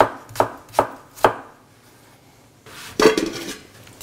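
A chef's knife dices apple on a plastic cutting board in four quick, even strokes, about two and a half a second. After a short pause there is a brief, louder noise about three seconds in.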